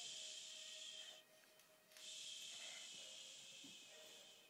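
Near silence with a faint steady hiss that breaks off for under a second about a second in, then goes on.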